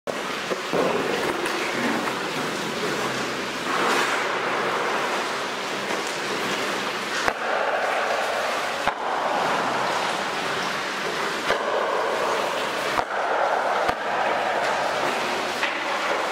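Ice skate blades carving and scraping on tunnel ice, in waves that rise and fall, with several sharp knocks of hockey sticks on a puck in the second half, in the hollow space of a concrete tunnel.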